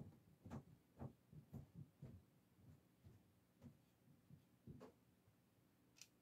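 Near silence, with faint soft dabs and strokes of a paintbrush on the painting, about two a second at an uneven pace.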